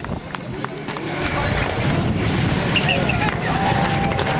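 Rallycross car engines running hard and drawing nearer, the noise growing louder from about a second in, with voices in the background.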